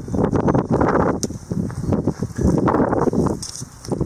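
Storm wind buffeting the microphone in gusts, a rumbling roar that swells and drops.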